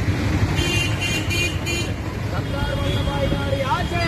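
Roadside traffic with a steady low rumble, and a vehicle horn sounding four short high toots in quick succession in the first two seconds. Voices start up near the end.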